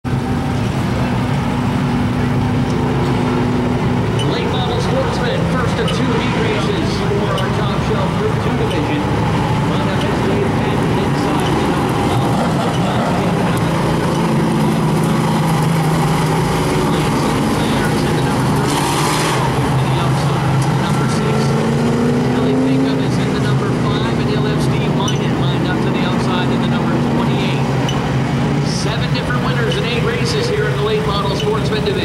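A pack of late model stock cars running together on a short oval, their engines a steady, loud drone that rises and falls a little in pitch as they circle.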